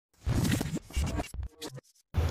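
Short musical intro sound effect, scratchy and noisy, in a few loud bursts with brief gaps, starting just after the beginning and cutting off just before the end.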